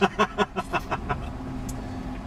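A man laughing in a quick run of short pulses that fade out within about a second, over the steady low hum of a car heard from inside the cabin.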